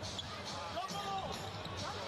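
Basketball arena game sound: steady crowd murmur, with a basketball being dribbled on the hardwood court.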